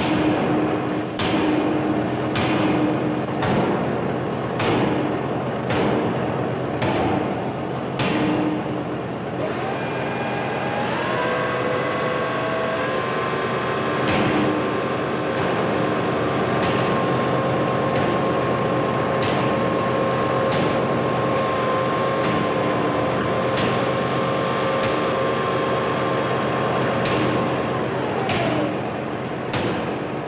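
Heavy forge machinery: a sharp metallic strike about once a second over a steady machine hum, the strikes pausing for several seconds in the middle. A machine whine rises in pitch about ten seconds in, holds steady, and slides down again near the end.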